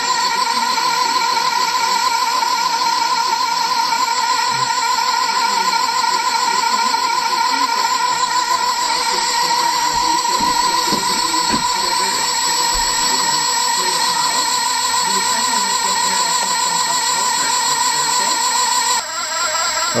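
Steady high-pitched machine whine from the electric motors of a multichannel peristaltic pump and the drill mixer stirring its supply bucket. Several constant tones hold their pitch throughout with a slight waver, while the pump runs at 132 RPM drawing a thick clay-wax emulsion.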